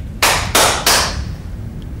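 Three sharp hand claps, about a third of a second apart, calling a room to attention.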